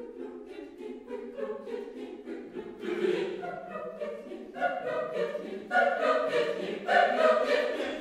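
Mixed chamber choir singing a cappella in Russian, in quick short syllables, growing louder in the second half.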